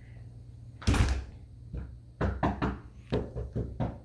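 A glass-paned door is pulled shut with a thump about a second in, followed by a run of about seven quick knocks on the door.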